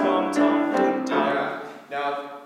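Young male solo voice singing a phrase with piano accompaniment, the notes dying away about a second and a half in. It is a retry of an opening phrase, sung to carry a melisma across the pitches without an aspirated 'h' between them.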